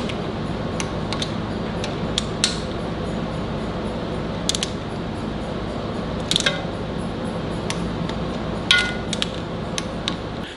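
Socket wrench tightening the bolts of an aluminium engine timing cover: a few scattered sharp metallic clicks and clinks, two of them ringing briefly, over a steady background hiss.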